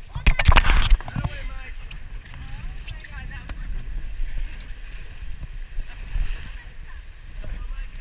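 A loud burst of knocking and rubbing on the microphone in the first second, as the action camera is pressed against a wet life jacket. Then a steady rush of river water and wind on the microphone aboard a raft.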